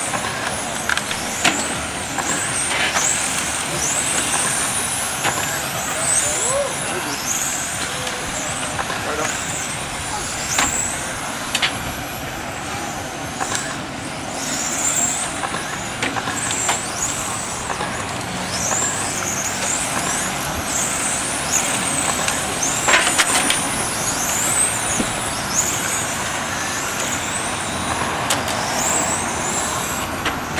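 RC race cars running laps, their motors giving short high whines that rise in pitch again and again as the cars accelerate down the straights, with a few sharp clicks among them.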